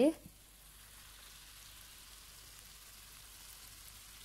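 Tomato sauce sizzling faintly in a frying pan under stuffed eggplant halves, a soft steady hiss.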